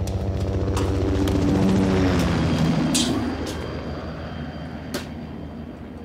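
A vehicle engine droning past, its pitch dropping about two seconds in and then fading away, with a short click near the middle.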